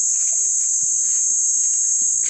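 Insects droning steadily in one high-pitched band, with no break.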